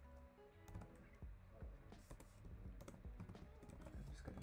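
Computer keyboard typing: a run of quick, uneven key clicks starting a little after half a second in, over faint background music.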